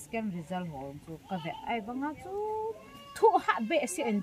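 A woman speaking at length in a steady conversational voice, getting louder and more emphatic near the end.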